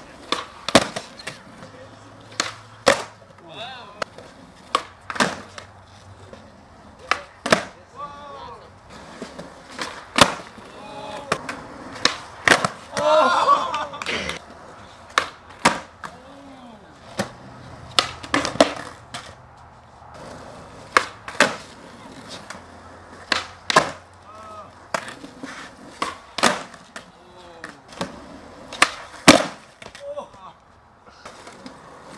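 Skateboards doing flip tricks on smooth concrete: many sharp pops of the tail and slaps of the board landing, often in quick pairs, with wheels rolling between them. Faint voices of onlookers run under it, louder for a moment around the middle.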